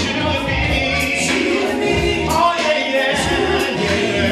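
A small vocal group of men and a woman singing together into microphones over amplified music with a bass line and a steady beat. The bass drops out for a moment a little after the middle.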